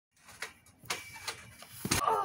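Soft thuds of feet on a trampoline mat, about two a second, then a heavier thump near the end as a body falls through and hits the concrete beneath.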